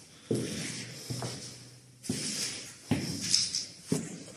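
Footsteps on a bare concrete floor: about five steps, roughly one a second.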